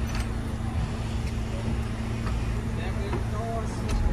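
New York City Subway R211 train standing at the platform with its doors open, its onboard equipment giving a steady low hum.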